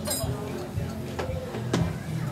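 Three sharp clicks and knocks from instruments being handled between songs, an acoustic guitar being lifted and settled to play, over low background voices.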